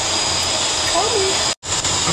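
Steady roar of a jetliner's cabin noise, the hiss and rumble of engines and airflow, with a faint voice over it. It breaks off abruptly for an instant about one and a half seconds in, then the same roar returns.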